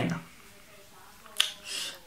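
The end of a man's spoken word, then a quiet pause broken by a single sharp click about one and a half seconds in, followed by a short soft hiss.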